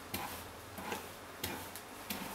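Hairbrush strokes through long wet hair, three faint brushy swishes a little over half a second apart.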